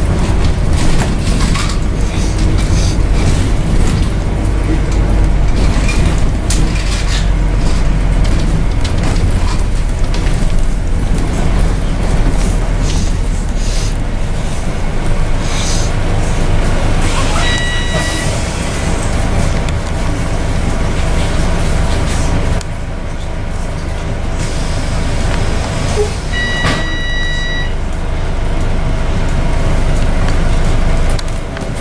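Double-decker bus running on the road, heard from the top deck: a steady low engine rumble with road noise, easing a little about halfway through. Two short electronic beeping tones sound, once a little past halfway and again near the end.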